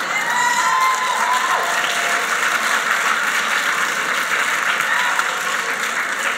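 Audience applauding and cheering: steady clapping, with voices calling out above it in the first couple of seconds.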